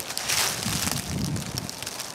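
Footsteps crunching through dry fallen leaves, an irregular crackling rustle.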